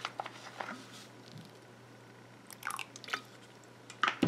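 Small handling noises, a few short clicks and crackles in two brief clusters, in the first second and again about two and a half seconds in, as titanium dioxide is squeezed from a plastic bottle into the coral soap batter.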